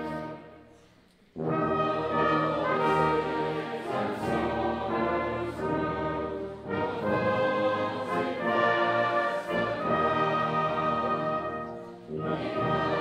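Brass band playing a Christmas carol, with a hall full of people singing along. The chord fades away just after the start, and band and singers come back in together about a second and a half in.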